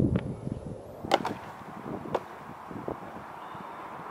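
Four short, sharp knocks about a second apart over a faint outdoor background.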